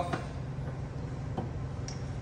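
A few light metallic clicks from the flywheel and its screw-on puller being handled on the crankshaft, over a steady low hum.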